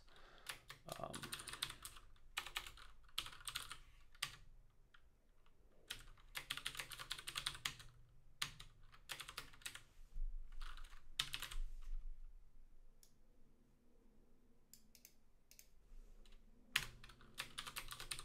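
Typing on a computer keyboard: uneven bursts of keystrokes with short pauses between them.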